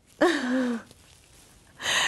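A woman's breathy, sighing laugh that falls in pitch and fades, then a short, sharp breath in near the end.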